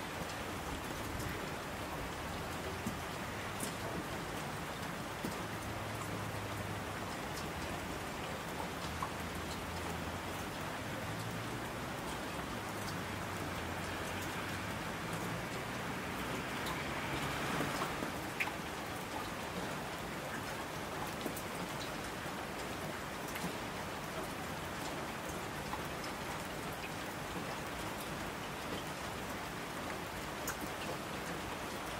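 Steady rain falling, with scattered sharp drop ticks and a brief swell a little past halfway.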